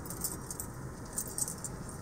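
Inside a moving car's cabin: a steady low road and engine rumble from slow driving, with light, irregular high jingling and clicking, like keys jangling, at about a quarter second in and again around the middle.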